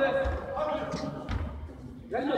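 Two dull thuds, likely a football being kicked on artificial turf, echoing in a large indoor hall, under faint distant voices.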